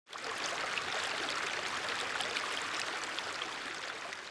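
A stream running over stones: a steady rush of water with small scattered splashes, easing off slightly near the end.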